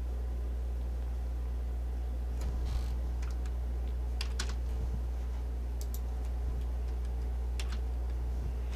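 A handful of light, irregular clicks at a computer, some in quick pairs or small clusters, over a steady low electrical hum.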